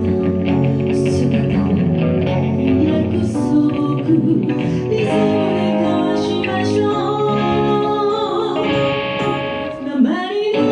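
Live band performance: a woman sings a blues number into a microphone over guitar accompaniment.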